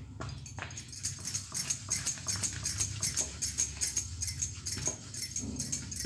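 Wooden rolling pin rolling out spinach paratha dough on a round wooden board: a run of short knocks and rolling rubs, roughly two or three a second, over a low steady hum.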